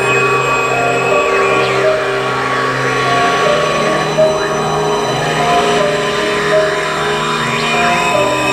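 Circuit-bent electronic sound devices playing an improvised piece: sustained droning tones under a repeating two-note figure, with sweeping rising and falling glides over the top.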